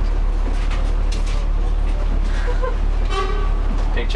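Steady low rumble of a bus's diesel engine running, heard from inside the passenger deck. A short pitched sound comes about three seconds in.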